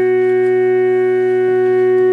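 Steady electronic drone: several held tones sound together as one unchanging chord, without breaks.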